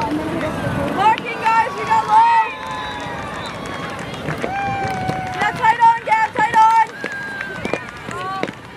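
Field hockey players and sideline spectators shouting, several voices calling at once and overlapping, with no clear words.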